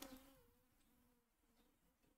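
Near silence: room tone with only a faint, slightly wavering hum.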